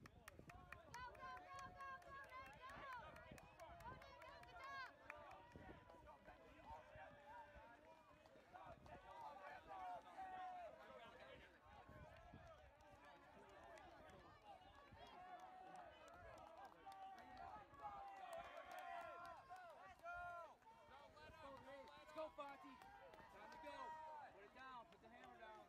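Faint voices of spectators calling and cheering from a distance, overlapping throughout, with the footfalls of runners passing on grass.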